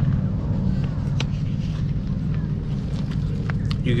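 Steady low rumbling noise with a few faint sharp clicks.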